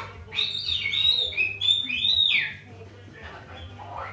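Sulphur-crested cockatoo whistling a short run of gliding notes that step up and down in pitch, stopping about two and a half seconds in.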